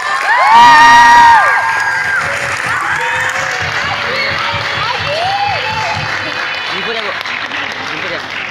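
Audience clapping and cheering: a loud shouted cheer from several voices in the first second and a half, then steady applause with scattered voices calling out.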